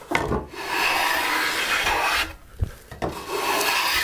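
A No. 5 bench plane cutting shavings along the edge of a board in two long strokes, with a short knock between them. The plane is taking down the high middle of a convex, bowed edge to make it straight.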